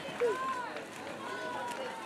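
Spectators calling out in high-pitched voices, a few separate drawn-out shouts cheering on the swimmers, over a low hum of crowd noise.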